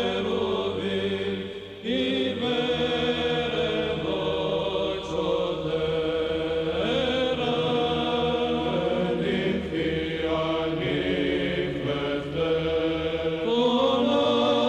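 Choir singing Orthodox church chant in slow, held notes over a steady low drone, with a short break about two seconds in.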